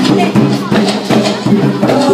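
Dance music led by a fast, steady drum beat over low sustained tones.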